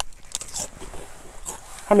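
A mouthful of ridged potato chips being bitten and chewed, a run of short, crisp crunches. A man's voice starts right at the end.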